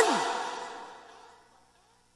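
A man's voice breaks off at the end of a phrase, and its sound dies away over about a second as a breathy, echoing tail before cutting to silence.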